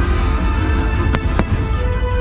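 Fireworks show music playing over a heavy low rumble, with two sharp firework cracks about a quarter second apart a little past the middle.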